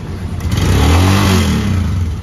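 Royal Enfield Himalayan's single-cylinder engine running at idle, then revved once about half a second in. Its pitch rises and falls back toward idle near the end.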